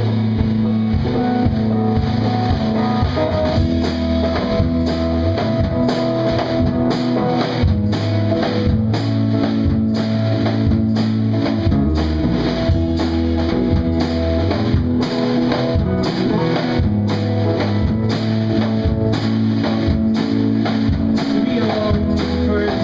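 Live rock band playing an instrumental passage: electric guitar over a steady drum-kit beat.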